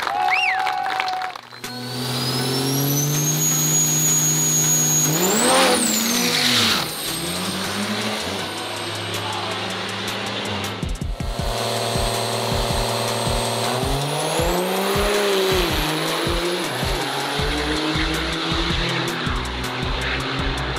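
Turbocharged diesel drag-racing pickup trucks launching and running down the strip, with a rising high whistle early on and revving engine sweeps, mixed with background music.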